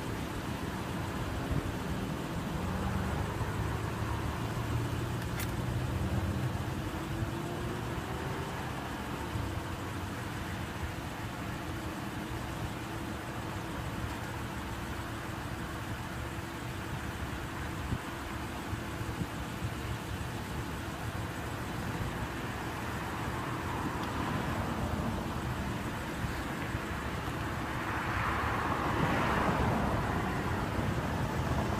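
Steady road-traffic noise with a low engine hum, and a vehicle passing by near the end.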